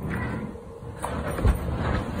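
A stiff page of a spiral-bound scrapbook being turned by hand, landing with a short soft thump about one and a half seconds in, over a low steady rumble.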